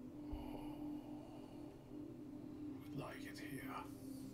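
A man's soft whispered murmur about three seconds in, over a faint, steady low hum.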